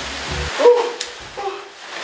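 A man laughing in short, high yelping bursts, with a sharp click about a second in.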